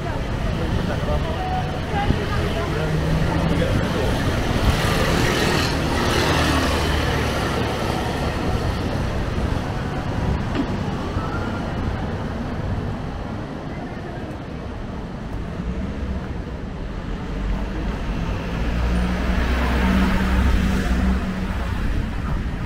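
Town-centre road traffic: cars passing along the street, their engine and tyre noise swelling a few seconds in and again near the end, with passers-by talking.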